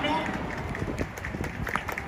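Outdoor urban background noise, with faint voices in it and a few soft knocks.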